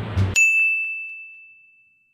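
A single bell-like ding sound effect, struck once about a third of a second in and ringing out in a clear high tone that fades away over a second and a half.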